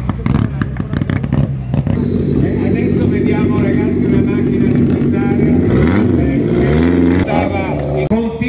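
Rally car engines passing close at low speed: a Mitsubishi Lancer Evo with sharp exhaust pops and crackles in the first couple of seconds, then a steady, heavy engine note from the next car. The revs rise and fall near the end.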